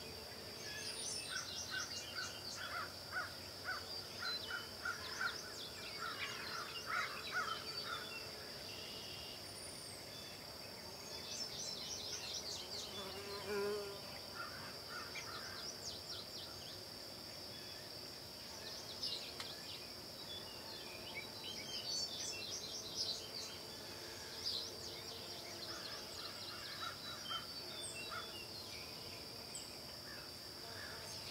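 Quiet woodland ambience: a steady high-pitched insect drone throughout, with short bursts of chirping calls every few seconds.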